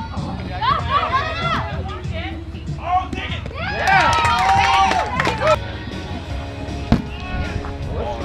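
A kickball kicked with a sharp thump right at the start, followed by players shouting and cheering as the play runs, and another sharp knock near the end.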